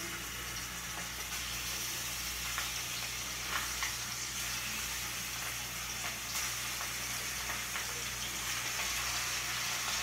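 Food sizzling steadily in hot oil in a frying pan, with a few faint clicks.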